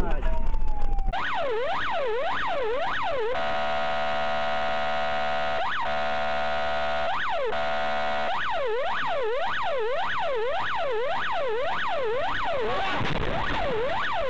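Electronic emergency-vehicle siren: a fast up-and-down yelp about twice a second, then a steady held tone for about five seconds, then the yelp again. A loud rushing noise fills the first second and cuts off as the siren starts.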